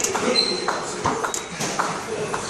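Indistinct voices in a large room, with several scattered sharp knocks or clicks and one brief high-pitched squeak about half a second in.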